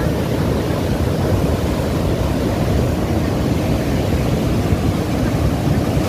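Cold lahar, a volcanic mudflow of water, sand, stones and wood, rushing down the channel: a loud, steady low rush with no breaks.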